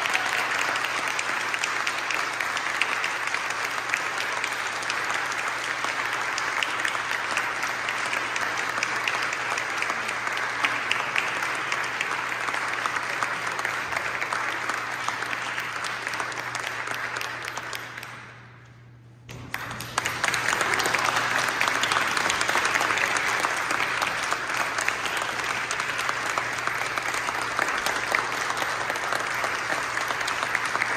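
Audience applauding steadily. The clapping drops away briefly about two-thirds of the way through, then comes back suddenly.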